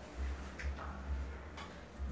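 Faint handling sounds of leafy foliage stems being worked into a flower arrangement in a glass vase: a few light clicks over a steady low hum.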